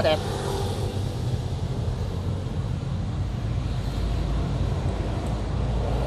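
A steady, even low engine drone, its speed not changing.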